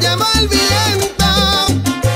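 Salsa band playing: a bass line of separate held notes under percussion and bending melody lines from the horns or voice.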